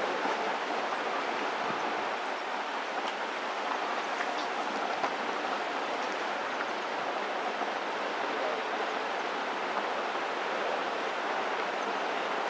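Steady open-air background noise, an even rushing hiss with no distinct events, and a few faint ticks.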